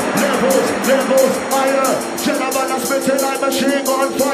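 Drum and bass track in a breakdown with no bass: fast, regular hi-hats and a wavering melodic line over them.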